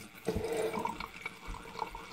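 Red wine poured from the bottle through an aerator pourer into a large glass, starting about a quarter second in as a steady stream splashing into the wine, with the aerator mixing air into the wine as it flows.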